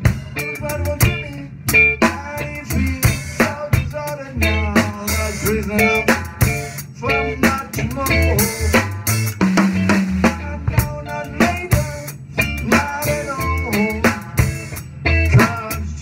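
A band playing live: an acoustic drum kit, with snare, bass drum and cymbals struck with sticks in a steady groove, over electric guitar, bass and a singing voice.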